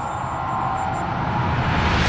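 A whooshing sound-effect riser for an animated logo reveal: a noisy swell with a deep rumble that grows steadily louder.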